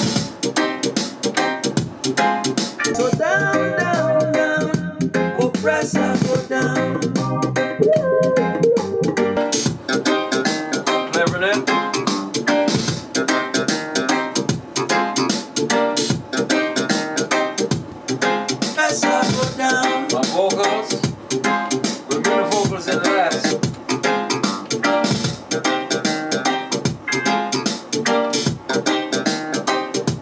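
A reggae track being mixed, with guitar and bass over a steady beat.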